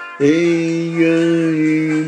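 A man singing one long held note at a steady pitch, starting just after the beginning, over background music.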